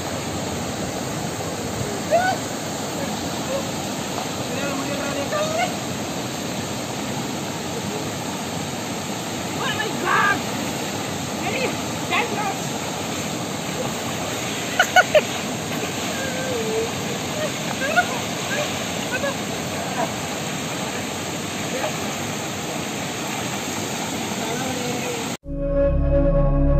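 Water rushing over a shallow rocky cascade in a steady roar, with brief shouts and calls over it. It cuts off suddenly near the end as music comes in.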